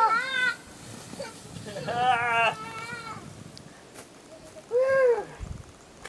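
A toddler's high-pitched voice calling out three times while riding a sled down a snowy slope, the last call rising and then falling in pitch.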